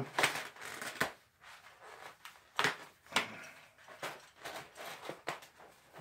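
Thin titanium stove-pipe sheet being rolled up tight by gloved hands: irregular crinkles, clicks and scrapes of flexing sheet metal, several sharp ones spread through, with quieter gaps between.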